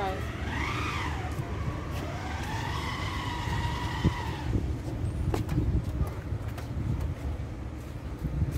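Car tyres squealing twice in a car park: a short squeal that rises and falls, then a longer held squeal of about three seconds, over a steady low rumble.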